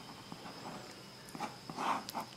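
Faint scratching of a pen on paper as a short figure is written and boxed, with a few light strokes near the end.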